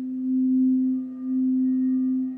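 Crystal singing bowl sung by circling a mallet around its rim: one steady low tone with faint higher overtones, pulsing slowly and dipping briefly about a second in.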